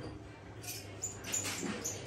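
Ceiling fan running with a low hum and a few short, high squeaks, chirping like a bird.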